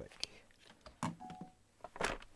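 Faint handling noises: a few sharp clicks and knocks as headphones are taken off and a person gets up from the desk chair, with a short steady beep a little after a second in and a louder knock near the end.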